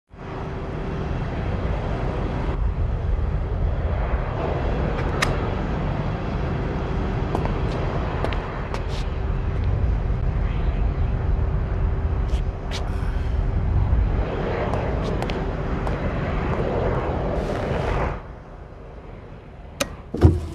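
Steady low rumbling ambience of a concrete parking garage with a faint steady hum and a few light clicks and taps; the rumble drops away suddenly about two seconds before the end.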